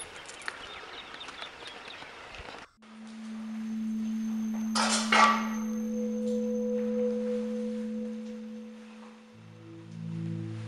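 Low handheld background noise for the first few seconds, then ambient background music enters: a single sustained low drone tone, joined by a higher held tone, with lower notes added near the end. A short burst of noise about five seconds in is the loudest moment.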